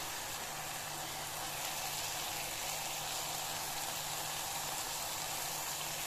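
Tomato masala sizzling steadily as it fries in an aluminium pressure cooker over a low-to-medium gas flame, with a faint steady low hum underneath.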